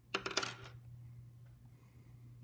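A wooden pencil dropped onto a desk, clattering in a quick run of light knocks for about half a second.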